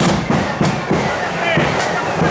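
Marching flute band's side drums and bass drum beating a march rhythm, with sharp snare strokes about three a second over low bass drum thuds.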